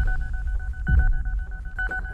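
Rapid electronic beeping, a high steady tone pulsing many times a second, from the countdown timer of a bomb strapped to a person's chest. A low rumble runs underneath, with one deeper falling hit about halfway through.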